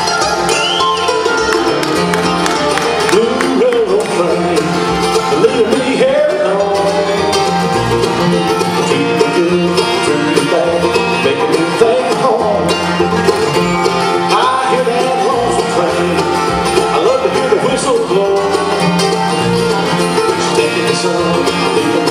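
Live bluegrass band playing an instrumental break, with flatpicked acoustic guitar, banjo and upright bass.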